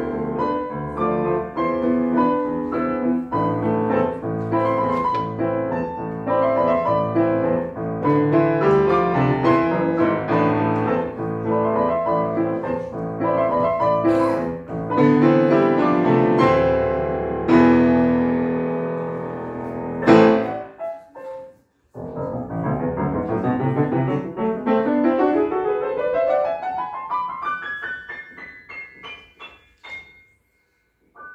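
Petrof grand piano played four hands in a waltz, with dense chords and melody. About twenty seconds in a loud chord is struck and the music breaks off for about a second. It then resumes with a long run climbing steadily up the keyboard until near the end.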